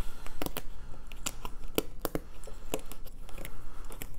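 Cardboard game tokens being punched out of a die-cut punchboard sheet by hand: a string of irregular sharp snaps, about three a second.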